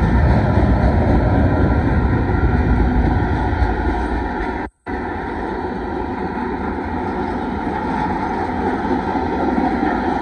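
Freight train cars, covered hoppers and tank cars, rolling past close by: a steady loud rumble and clatter of steel wheels on the rails, heaviest in the first few seconds. The sound cuts out for an instant about five seconds in.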